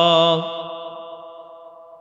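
A man chanting Arabic recitation into microphones, holding one long steady note. The note stops about half a second in and fades away slowly in a long echo.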